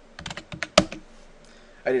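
Computer keyboard keys tapped in a quick run of about half a dozen clicks, the last one the loudest, as the REA (regenerate all) command is typed and entered in AutoCAD.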